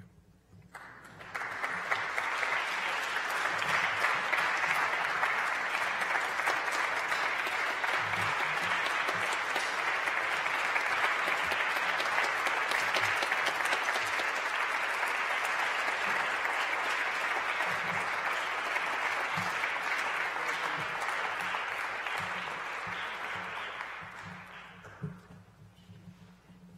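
An audience applauding steadily. It swells up within the first second or two and dies away near the end.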